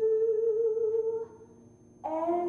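A woman's voice holding one long, steady sung note that stops a little over a second in.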